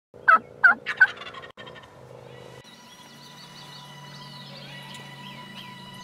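A wild turkey gobbler gobbles once, loud and rattling, in the first second. After it come faint small-bird chirps over a steady low hum.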